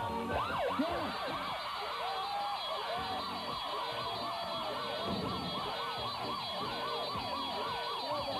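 Game-show win alarm: a siren-like sound effect of rapid, overlapping rising-and-falling whoops, signalling that the contestant has won the map round and caught the villain.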